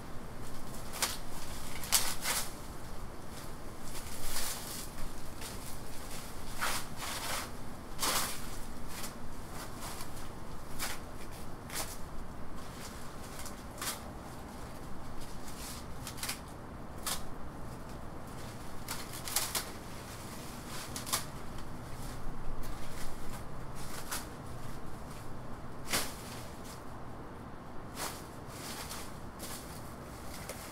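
Dry banana leaves and frond debris crackling and rustling in irregular bursts as they are cut, pulled away and trodden on.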